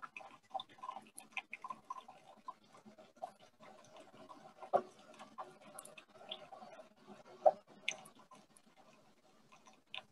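Faint, irregular clicks and taps from a computer mouse and keyboard during an attempt to share and play a video, with a sharper click near the middle and another about two-thirds of the way through.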